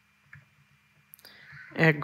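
Mostly quiet room tone with a faint click, then a sharp click a little past halfway. A voice begins speaking near the end.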